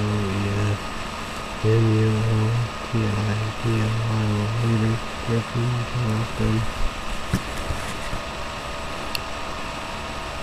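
A man's voice talking in short, flat-pitched, distorted bursts, like heavily processed webcam audio, over a faint steady electronic whine. The voice stops about seven seconds in, leaving only the whine.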